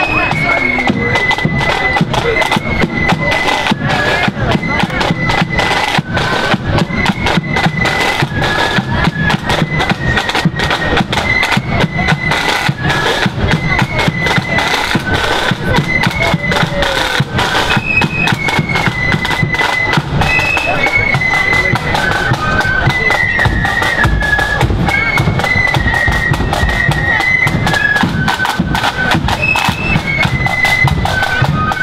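A marching flute band playing: a melody on the flutes over side drums and a bass drum keeping the march beat.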